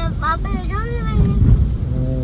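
Steady low road rumble inside a moving car's cabin, with a child's high-pitched voice speaking over it for about the first second and a half.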